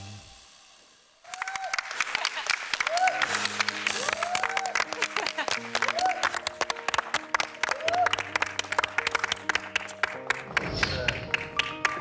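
The last note of the song fades out, and about a second in an audience breaks into applause with repeated whoops and cheers. Soft sustained background music joins underneath from about three seconds in.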